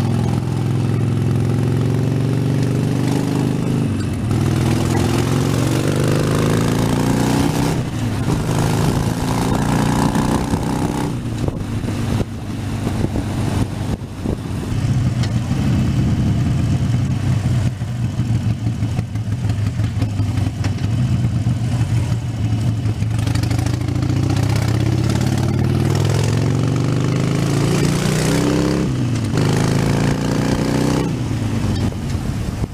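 Harley-Davidson Sportster 72's air-cooled 1200 cc V-twin engine running while under way. It rises in pitch as the bike accelerates about eight seconds in and again near the end, with short dips in between as it changes gear.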